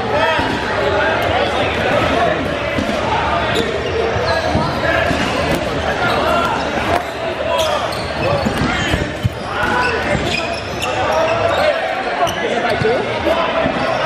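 Dodgeballs being thrown, bouncing and thudding on a hardwood gym floor, with sharp impacts scattered throughout, over constant overlapping shouts and chatter from many players. Everything echoes in a large gym hall.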